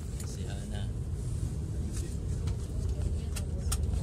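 A moving bus, heard from inside the passenger cabin: a steady low engine and road rumble, with two sharp clicks or rattles near the end.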